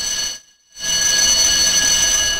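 An electronic sound effect with several steady high ringing tones over a hiss. It comes in two bursts: a short one, a brief break, then a longer one that slowly fades.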